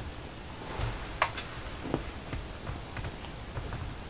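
Someone rummaging through things: faint rustling and handling noise with a scatter of light clicks and taps, the sharpest a little over a second in.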